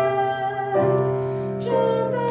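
Solo female voice singing a slow hymn with piano accompaniment, held notes changing about three quarters of a second in and again near the end.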